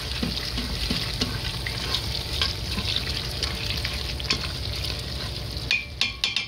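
Leeks and garlic sizzling in butter and olive oil in an Instant Pot's steel inner pot on sauté, stirred with a spoon, with a steady hiss and a few clicks of the spoon near the end.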